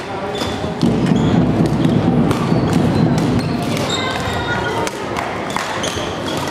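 Badminton rally sounds in a sports hall: sharp racket hits and shoe squeaks on the wooden court floor, over a steady background of voices in the hall that grows louder for a few seconds from about a second in.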